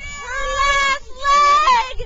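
A woman's high-pitched voice shouting two long, held cheers, the second ending in a falling swoop.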